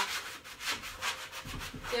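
Medium sanding block rubbed by hand over a painted wooden door in repeated back-and-forth strokes, distressing the hard-dried chalk-style paint.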